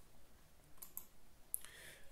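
A few faint clicks at a computer, advancing a presentation slide, over quiet room tone.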